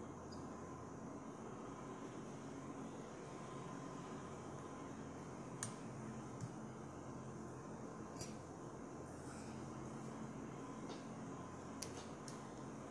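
Quiet room tone with a steady low hum and a handful of faint, sharp clicks spread through it, from small hand-tool handling while the thread head of a fly is whip-finished.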